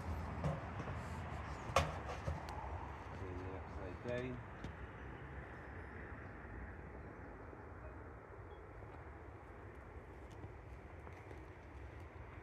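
Steady outdoor background rumble with a few knocks from metal targets being handled and set on a wooden cable-spool table, the sharpest about two seconds in. Around four seconds in there is a short bit of low muttered voice.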